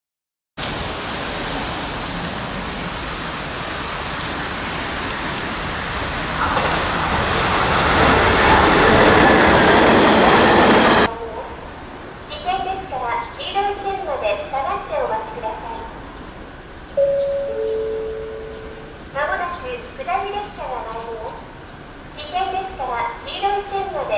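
A train running loud and steady, swelling for a few seconds and then cut off abruptly about eleven seconds in. Then a station public-address announcement warns that a down train is coming soon, with a two-note falling chime partway through.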